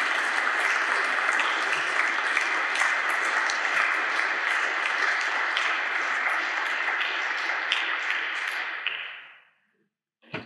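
Audience applauding steadily, the claps dying away about nine seconds in.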